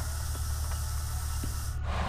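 Steady low electrical hum with an even hiss over it and a couple of faint ticks; the sound breaks off abruptly near the end.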